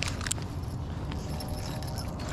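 Light metallic clinking and a few clicks from the wires, swivels and baits of a five-arm Mo Bling umbrella rig as it is reeled up to the rod tip and lifted out of the water.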